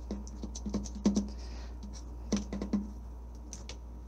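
Bottom of a 20-ounce plastic soda bottle being pressed and worked into acrylic paint on a paper plate: a run of irregular light clicks and taps of plastic on the plate, the loudest about a second in and again past two seconds.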